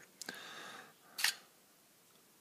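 S.T. Dupont Maxijet lighter's plastic insert being slid out of its case: a faint scrape, then a short sharp click about a second in as it comes free.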